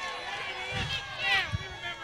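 Faint voices talking away from the microphone, with one short louder utterance in the middle.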